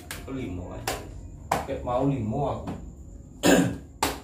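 Indistinct men's voices, with two sharp taps in the first second and a half and one loud, short burst of noise near the end.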